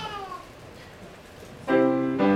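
A high, falling, drawn-out cry in the first half second, then a piano chord struck and held about 1.7 s in: the first of the chords played as the children's choir bows.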